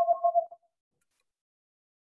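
Electronic pulsing tones, the same two pitches repeated about five times a second, cutting off suddenly about half a second in, then near silence.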